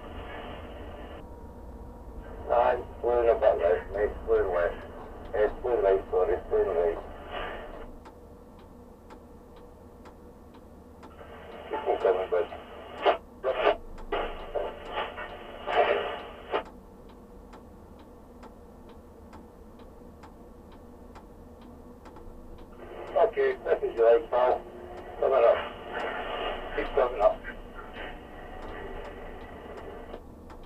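A man's voice over a two-way radio, narrow and tinny, in four bursts that each start and stop abruptly: a banksman talking the tower crane operator through a lift. A steady low hum runs underneath.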